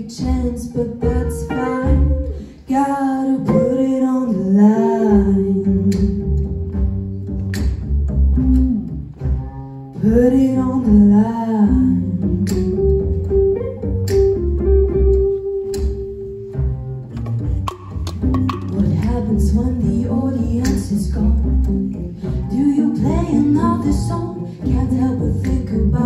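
Live jazz-soul band playing: a wavering, vibrato-laden melody line over a steady bass line and drum beat, with saxophone, electric guitar and voice on stage.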